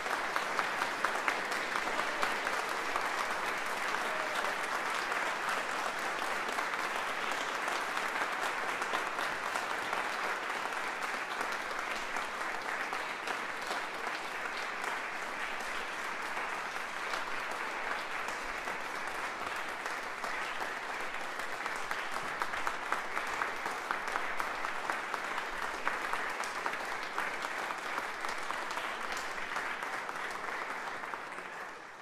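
Audience applause, dense and steady clapping.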